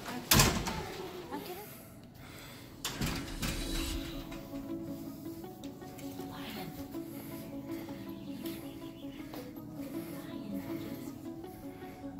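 A door's lever handle and latch clicking as the door is pushed open about half a second in, and a dull thump about three seconds later. Quiet background music then plays steadily.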